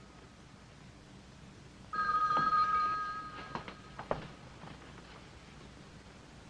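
Telephone ringing: one ring of about a second, starting about two seconds in and fading out, followed by a few faint knocks.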